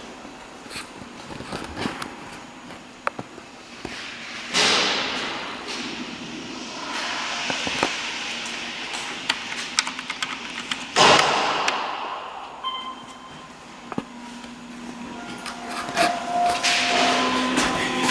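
Otis Series 1 elevator at a landing: clicks, two swelling whooshes of the sliding doors running, and a short steady electronic chime tone partway through as the car arrives.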